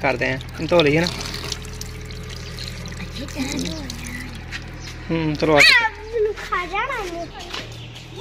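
Tap water running steadily onto hands and a husked coconut being washed under it, with people's voices talking over the water, loudest a little past the middle.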